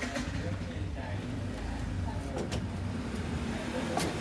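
Konica Minolta HQ9000 high-speed printer running as it feeds 300 g card stock, a steady mechanical hum with occasional sharp clicks.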